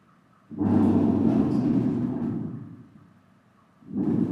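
Aluminium scoop coater scraping across the stretched mesh of a screen-printing frame, a coarse low rumble that starts suddenly about half a second in and fades out over about two seconds. A similar noise starts again near the end.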